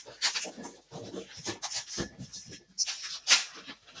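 Red 260 latex modelling balloons being twisted and rubbed by hand into loops, giving irregular short rubbery squeaks and creaks, the sharpest about three seconds in.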